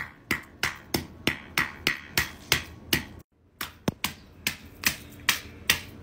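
A hammer striking a block of ice again and again, about three blows a second, with a brief break a little past the middle.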